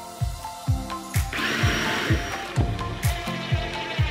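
Background music with a steady beat. About a second in, a cordless drill runs for about a second, drilling a pilot hole into a timber block.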